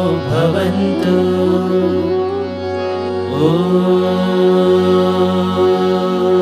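Indian devotional chanting sung in long held notes over a steady drone, the voice sliding up to a new note about three seconds in.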